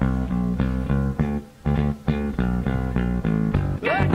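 Electric guitar and bass guitar playing a fast picked riff together in a live ska-punk band recording, with a brief break about a second and a half in.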